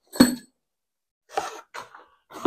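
A single short, sharp cough, followed by two fainter short sounds in the second half.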